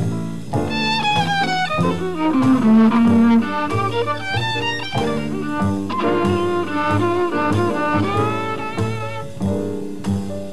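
Bowed violin playing a jazz solo, with sliding, gliding notes and quick runs, over an upright bass line that steps from note to note.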